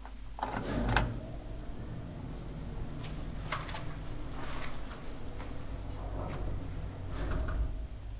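The hall call button of a 1983 KONE two-speed traction elevator is pressed with clicks about a second in. A low steady hum follows, with scattered faint clicks and clunks from the lift as it answers the call.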